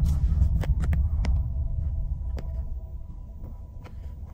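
Low road and engine rumble heard inside a moving car, fading toward the end, with a few light clicks scattered through it.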